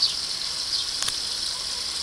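A steady high-pitched hiss or buzz, with one faint click about a second in.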